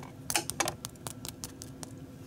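Fingers scratching and tapping the crisp, browned top crust of a skillet-baked cornbread, giving an irregular run of short, dry clicks. The crunch shows a crispy crust formed in a hot cast iron skillet.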